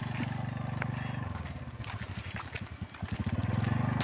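A small engine running nearby with a steady low drone. About a second in it falls to slower, separate putts and grows fainter, then picks up again near the end.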